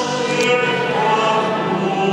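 Church choir singing a slow hymn in long, sustained chords.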